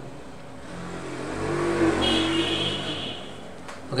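A motor vehicle passing by, its engine noise swelling up and fading away again over about three seconds.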